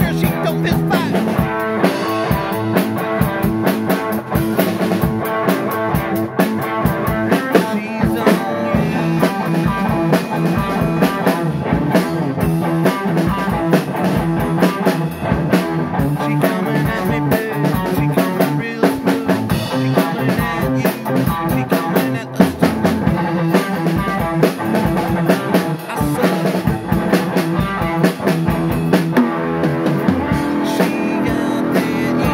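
Rock band playing loudly, the drum kit close by with many quick hits over guitar chords.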